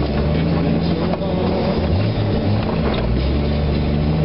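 Jeep engine running as it drives along a bumpy dirt track, its note shifting briefly around the middle, with rock music playing behind it.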